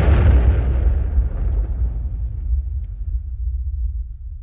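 Tail of an explosion sound effect, a bomb blast: a deep rumble with a hiss on top, the hiss fading over about three seconds while the deep rumble carries on.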